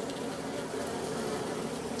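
Steady hum of many honeybees crawling and flying around an open top bar hive comb.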